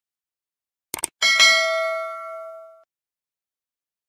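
Subscribe-button animation sound effect: a quick double click about a second in, then a notification bell ding that rings out and fades over about a second and a half.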